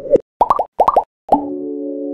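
Outro sound effects: about six quick bubbly bloops, each a short upward-gliding blip, followed about one and a half seconds in by a held synthesizer chord.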